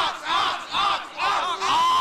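A group of young men yelling and cheering together at close range: several short shouts, then one long held yell near the end.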